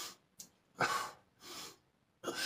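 A man's forceful breathing from the effort of dumbbell biceps curls: short, noisy breaths with a loud exhale about a second in, followed by a softer breath.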